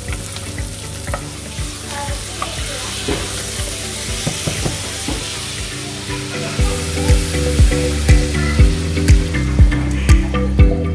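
Chopped garlic, onion, ginger and lemongrass, and then meat, sizzling as they fry in oil in a pot, stirred with a wooden spatula. Background music with a steady beat of about two a second runs underneath and grows louder about two-thirds of the way through.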